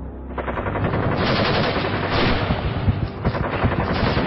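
Rapid, continuous gunfire, like a machine gun, setting in about half a second in and running on as a dense rattle of shots over a low rumble.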